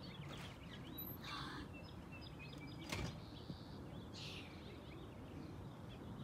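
Birds chirping and calling faintly in the background, with one sharp knock about halfway through.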